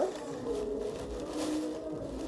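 Thin plastic shopping bag rustling and crinkling as a hand rummages through it, over a steady droning hum with a few wavering tones, like a vehicle engine running outside.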